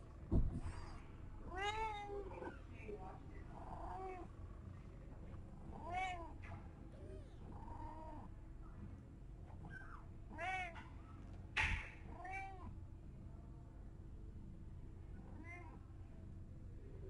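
Young kittens mewing: short, high-pitched calls that rise and fall, repeated irregularly, about eight or nine in all. A thump sounds about half a second in.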